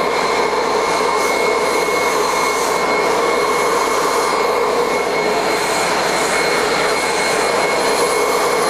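Ruwac FRV100 air-powered single-venturi vacuum running steadily, a continuous rush of air with a few steady whistling tones over it, as its floor tool sucks up starch and bentonite powder.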